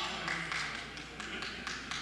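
About half a dozen light taps and knocks as people move about among wooden pews, over low chatter from the congregation.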